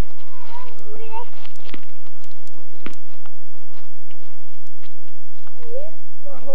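A dog whining once, a wavering call lasting under a second, near the start, with scattered sharp clicks around it.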